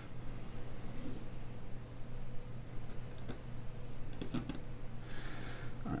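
A few small, light clicks from fingers handling a tiny knife screw and tools, about halfway through and again a little later. They sit over a steady low hum, with a soft hiss at the start and near the end.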